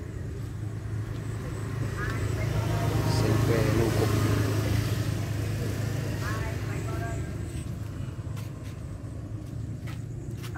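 A motor vehicle's engine with a low, steady hum that swells to its loudest about three to four seconds in, then slowly fades as it passes.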